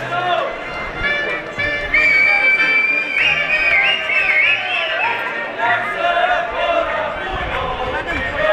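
Live folk music with several voices singing, a high note held about two seconds in and then wavering, over crowd chatter.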